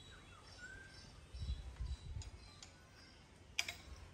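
Faint birds chirping in the background, with a few brief low rumbles about a second and a half in and a single sharp click near the end.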